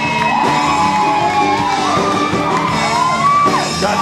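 Live rock band playing on through an instrumental stretch, with pitched notes bending up and down over the groove and whoops from the crowd.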